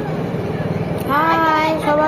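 A high voice singing or calling out in long held notes, starting about halfway through, over a steady low hum.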